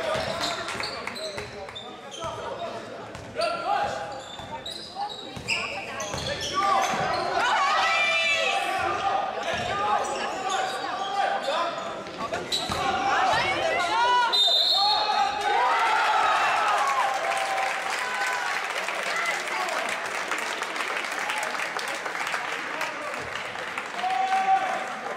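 Basketball dribbling and bouncing on a sports-hall floor during live play, with short squeaks of players' shoes on the court.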